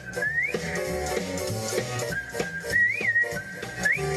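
A TV cartoon theme song playing, its melody whistled in held notes that slide upward, over a band backing.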